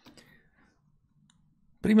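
A few faint clicks in the first half-second, then a man's voice begins speaking near the end.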